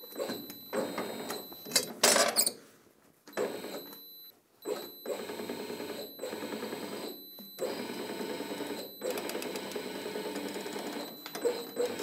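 Manual bar bender being turned by its lever, the steel turntable and pins grinding round as a twisted steel bar bends around the centre pin, with a rapid metallic rattle. A loud sharp clank about two seconds in.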